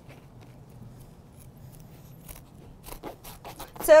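Atraumatic trauma shears cutting up the inner seam of a camouflage uniform trouser leg to expose a wound. It is quiet at first, then a run of crisp snips comes closer together in the last two seconds.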